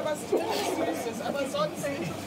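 Indistinct chatter: several people talking at once, with no clear words.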